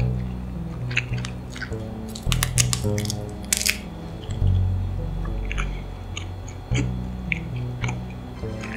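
Background music with a steady pattern of low notes. Sharp crunchy clicks of biting and chewing are scattered over it, with a dense, loud cluster of crackling clicks about two to four seconds in.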